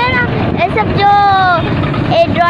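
A high singing voice holding long, sliding notes, the longest about a second in and falling slowly, over the steady rumble of traffic.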